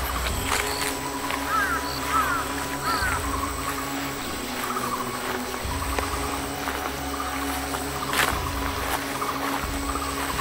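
Forest ambience: birds calling with short chirping notes over a steady high insect drone and a low rumble that swells and fades.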